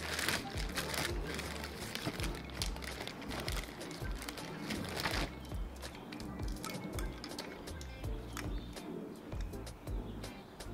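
Plastic zip-top bag crinkling and rustling as it is pulled open and ornaments are rummaged out, busiest in the first half, over background music with a steady bass line.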